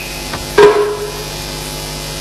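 A single sharp knock about half a second in, ringing briefly with a steady tone as it fades, with a fainter tap just before it.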